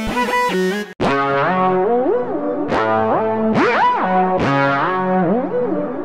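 Distorted synth lead patch in Omnisphere playing a melody, its notes gliding up and down in pitch, each phrase opening with a bright plucked attack that decays. The sound cuts out briefly about a second in, and a different lead patch picks up the melody.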